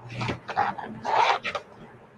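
A dog barking a few times in short, rough barks, the loudest just after a second in.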